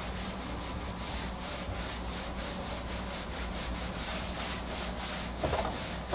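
A whiteboard eraser rubbing marker off a whiteboard in quick back-and-forth strokes, about two to three a second.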